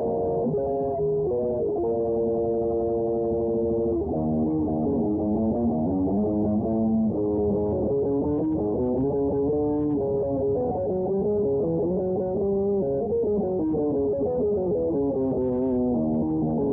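Electric guitar playing a melodic lead: a chord held for about two seconds, then a running line of single notes with slides and bends.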